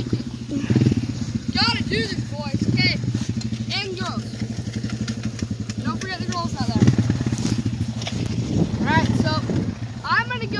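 Four-wheeler (ATV) engine running steadily, with voices talking intermittently over it.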